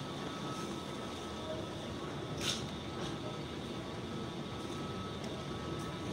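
Steady background hum of a large, nearly empty airport terminal hall, with a faint steady tone running through it and one short click about two and a half seconds in.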